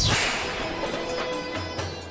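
A dramatic whoosh sound effect: a sharp swish at the start that fades away over about two seconds, with a held note of background score underneath.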